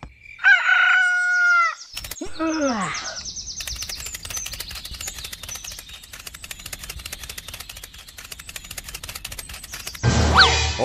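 Chicken sound effects: one drawn-out chicken call about half a second in, then a shorter call falling in pitch, then rapid wing flapping from about three and a half seconds in.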